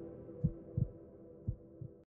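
Heartbeat sound effect, low double thumps about once a second, over a sustained music chord that fades out.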